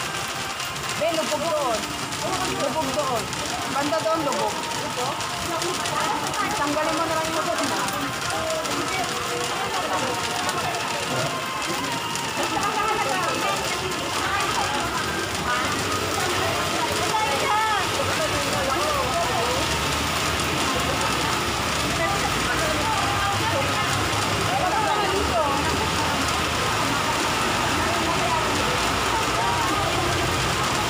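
Overlapping chatter of a group of women talking at once, several voices mixed together, over a steady hiss of background noise.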